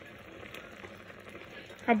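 Pan of fish, carrot and onion stewing in liquid, giving a faint, steady bubbling sizzle.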